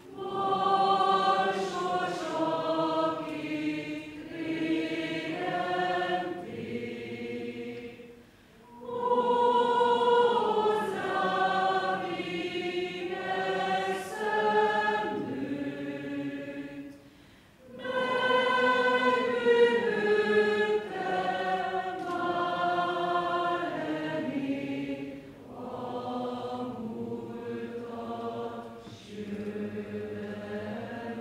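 Women's choir singing in long, held phrases, with brief pauses about every eight or nine seconds.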